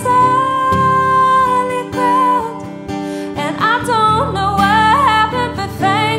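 Female voice singing live over acoustic guitar: one long held note, then wavering runs of quick pitch changes in the second half.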